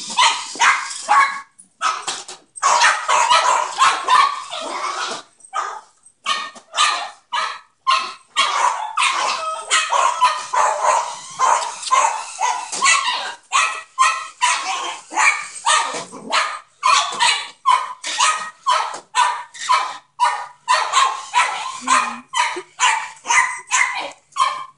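Small dogs barking over and over in sharp, high yaps, about two or three a second with only brief breaks, agitated by a remote-control car.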